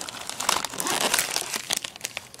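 Clear plastic wrapping crinkling and crackling as a packaged set of donut moulds is handled and lifted out of a cardboard box. It is a continuous run of small, quick crackles.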